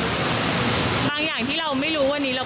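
Steady outdoor background noise, an even hiss with no voice for about a second, then an abrupt cut to a man talking.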